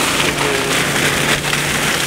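Water gushing from a pump's discharge hose and splashing into and back out of a wheelbarrow tub: a loud, steady rush.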